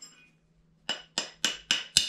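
Five quick metallic clinks, about four a second, starting about a second in: a steel open-end wrench knocking against the body of a removed oxygen sensor as it is worked off the sensor.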